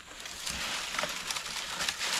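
Dry saw palmetto fronds and leaf litter rustling and crackling as a child crawls through the brush, with scattered small crackles.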